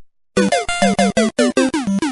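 Short electronic end-card jingle of Google Hangouts On Air: a quick run of short synth notes, each sliding down in pitch, about six a second, starting about a third of a second in.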